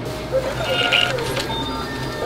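A self-checkout terminal giving short electronic beeps as the card payment completes, over background music.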